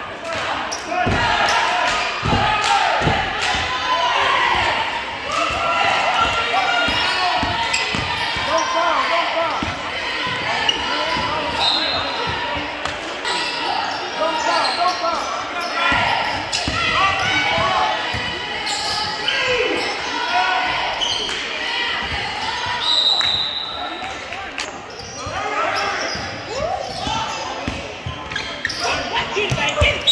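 A basketball bouncing repeatedly on a hardwood gym floor during live play, with indistinct voices of players and spectators echoing in a large gym. A few short high squeaks, sneakers on the hardwood, cut through.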